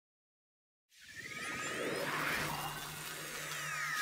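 Logo-animation sound effect starting about a second in: a swelling whoosh with sweeping rising and falling tones over a steady low hum.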